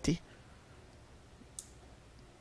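A man's speech trails off at the start, then a pause of quiet room tone with one faint, short click about one and a half seconds in.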